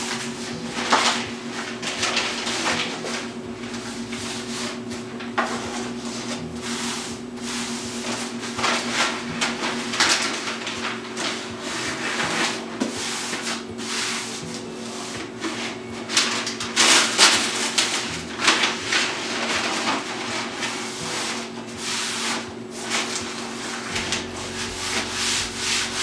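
Peel-and-stick wallpaper being rubbed down flat against a wooden shelf by hand: a run of irregular rubbing and scraping strokes, with a steady low hum underneath.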